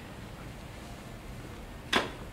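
Low, steady room tone picked up by the podium microphone, with one brief sharp sound near the end.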